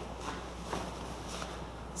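Faint soft thuds and rustles of bare feet pushing, pivoting and landing on foam mats, with the swish of a cotton karate gi, as a front kick and a side kick are thrown: a few light impacts.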